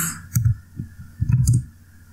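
Typing on a computer keyboard: a handful of irregular keystroke clicks, each with a dull thump.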